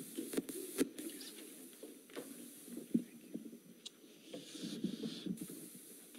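Faint hall room noise with a scattered handful of small knocks and clicks as musicians settle in at their instruments on stage.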